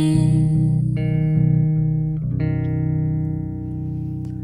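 Slow ensemble music of held chords from cellos, electric bass and voices, the chord changing about a second in and again a little after two seconds, then softening near the end.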